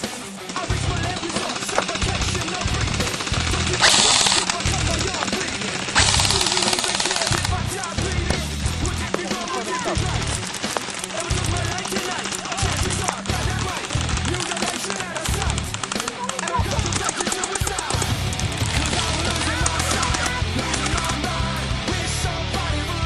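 Loud rock music with a steady driving drum beat, with crashes about four and six seconds in.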